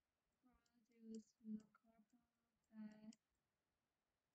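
A woman speaking softly in a few short phrases, with small clicks between them.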